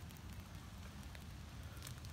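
Faint light rain: scattered soft ticks of drops over a steady low rumble.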